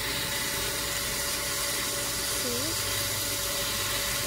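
A steady hiss with a constant faint hum underneath. A short rising vocal sound comes a little past halfway through.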